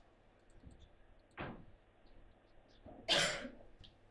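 A person coughing: a short cough about a second and a half in, then a louder one about three seconds in.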